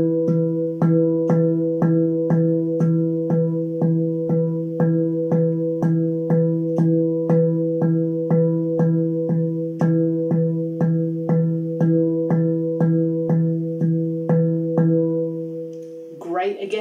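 Handpan's central ding note struck with alternating hands in an even single-stroke roll, about two and a half strokes a second, the note ringing on continuously between strikes. The strokes stop shortly before the end and the ring dies away.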